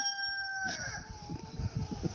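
A held animal call at one steady pitch that drops and fades about two-thirds of a second in, followed by a fainter wavering tone.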